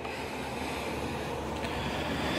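A steady low hum with hiss, slowly growing louder, and a faint tick about a second and a half in.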